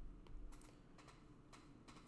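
Near silence with faint, scattered clicks and taps of a pointing device drawing on a computer whiteboard app.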